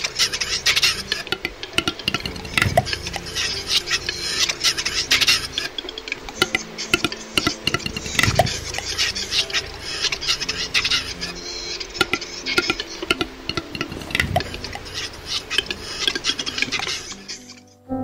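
Footsteps on a forest trail with dense, irregular crackling and rustling as twigs, needles and branches brush past and break underfoot, recorded close on a handheld camera.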